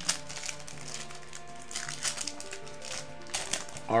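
Foil booster-pack wrapper being torn open and crinkled by hand, a few short sharp crackles, over steady background music.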